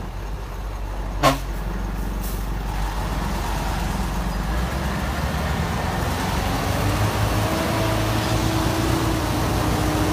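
Engine of a heavy three-axle truck loaded with acacia logs, running as it comes down a muddy track and passes close, growing louder as it nears. A sudden short loud burst about a second in, and a steady whine joins the engine drone about seven seconds in.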